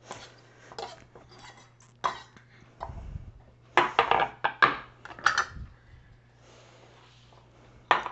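Kitchen knife and wooden cutting board knocking and scraping as diced vegetables are pushed off the board into a bowl. There are a few separate knocks, with the loudest cluster of clattering strikes a little after the middle.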